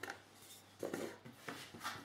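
A few faint, short rubbing and handling sounds of a hand taking hold of a folded block of dough on a countertop, in a quiet room.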